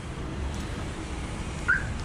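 Outdoor background of steady low traffic rumble, with one short high chirp a little before the end.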